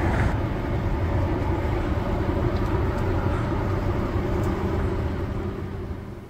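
Steady noise of road vehicles going by close at hand, engine rumble and tyre noise, fading away near the end.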